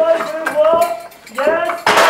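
High, drawn-out voice calls from the costumed performers, broken by sharp clacks and clinks on stage, one loud clack near the end.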